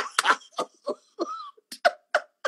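A woman's hard laughter in short, breathy bursts, about three a second, with no words.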